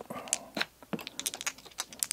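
Small plastic dice clicking against one another as a hand picks them up and handles them: a scattering of light clicks, quickest about a second in.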